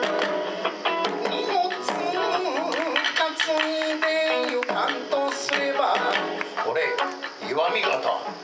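Kawachi ondo accompaniment: electric guitar phrases over taiko drum strikes, with a wavering, vibrato-laden vocal line in the middle.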